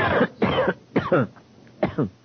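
A man coughing and clearing his throat, four short coughs in a row.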